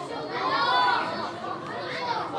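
A man's voice reciting the Quran in one long, melodic phrase that rises and then falls in pitch, over the murmur of a crowd.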